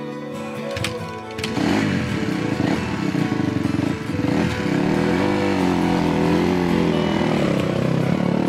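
A dirt bike's engine starts about a second and a half in, then runs and revs with its pitch rising and falling. Guitar music plays underneath.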